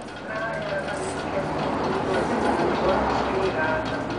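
Indistinct voices of people talking in the background, no words clear.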